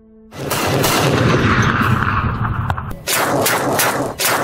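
A steady loud rushing noise, then, about three seconds in, rapid automatic gunfire at about six shots a second.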